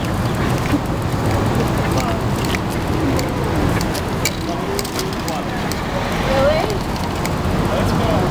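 Downtown street ambience: steady traffic noise with indistinct chatter of people close by.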